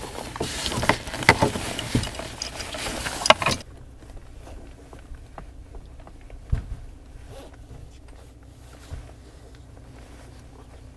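Rustling and knocking of clothing and gear as a passenger settles into an open trike seat, over wind noise on the microphone, with sharp clicks. A few seconds in it drops suddenly to faint rustles and clicks of a helmet being fitted over a low steady hum.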